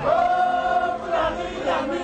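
A group of voices singing together: one long held note through about the first second, then shorter wavering phrases.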